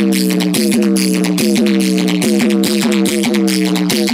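Loud electronic dance music played through a large DJ speaker stack during a sound check. A pitched synth note repeats a little over twice a second, sliding down in pitch each time, over a steady beat.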